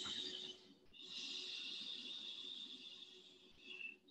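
Faint breathing: a short breath, then a long, steady exhale of about three seconds, heard as a soft hiss.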